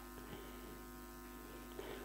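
Faint, steady electrical hum with a few steady higher overtones: mains hum in the recording, with nothing else sounding.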